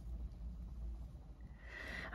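Quiet room tone with a steady low hum, and a soft intake of breath near the end.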